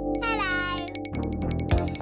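Cartoon squirrel sound effect over children's music: a short squeaky call that dips in pitch, then a rapid chatter of clicks, about a dozen a second.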